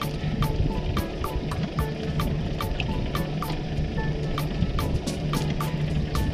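Background music with a steady beat, a sharp tick about four times a second over a sustained low tone.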